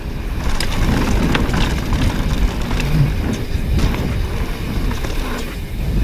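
First-generation YT Jeffsy 29 mountain bike descending a dirt singletrack at speed: a steady loud rumble of tyres on dirt and wind on the camera microphone, with scattered sharp clicks and rattles from the bike over bumps.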